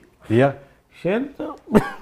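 A person talking in short phrases, with a brief throat-clearing near the end.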